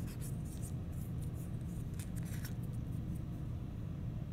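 Light scratches and small clicks as dried clay bits are picked and scraped off a metal pottery rib, scattered over the first couple of seconds, over a steady low background hum.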